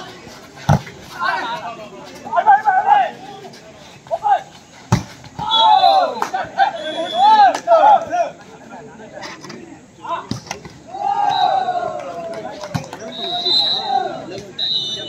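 Volleyball being struck, with sharp smacks of hands or arms hitting the ball about a second in and again about five seconds in, and fainter hits later. Players shout calls between the hits.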